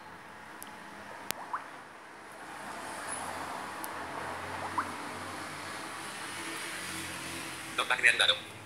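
Steady background noise, a low rumble with hiss, that grows louder about two and a half seconds in and holds, with a single sharp click a little after a second in.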